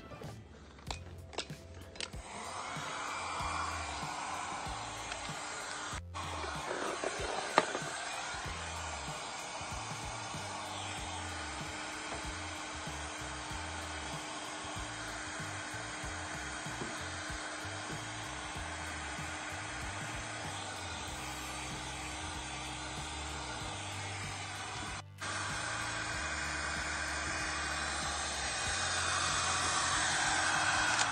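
A handheld electric heat gun blowing steadily, with a faint steady hum, from about two seconds in. It is heating reflective vinyl chevron stickers to soften their adhesive for removal.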